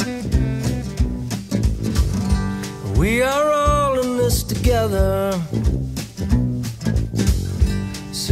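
Blues-rock band playing a song's opening bars: a steady beat under guitar, with a long note that bends in pitch about three seconds in and shorter bent notes just after.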